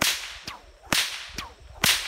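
Bullwhip cracking three times, about a second apart, each a sharp crack with a short echo, as it is whipped at a Virginia creeper plant to cut it up.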